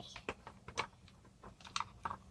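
A few light clicks and taps of plastic dolls and small toys being handled, scattered, with several close together near the end.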